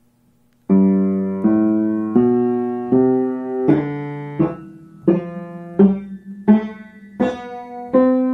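Petrof upright piano played by hand: a steady series of chords, each struck about 0.7 s after the last, starting a little under a second in. The later chords are cut shorter than the first ones.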